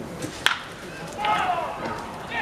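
A single sharp crack of a baseball bat hitting a pitched ball, about half a second in, followed by voices shouting.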